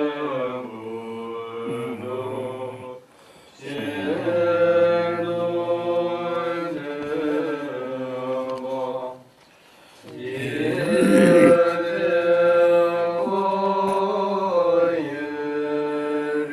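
Tibetan Buddhist monks chanting a prayer in long, held phrases, with brief pauses for breath about three seconds and nine and a half seconds in.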